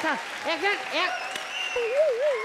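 Studio audience applauding, with a few short vocal exclamations over it. A wavering, warbling tone begins near the end.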